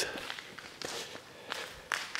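Footsteps of a person walking across a hard mall floor scattered with debris: a few separate steps.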